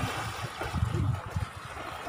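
Pool water splashing and sloshing around a swimmer in a life jacket, over an irregular low rumble.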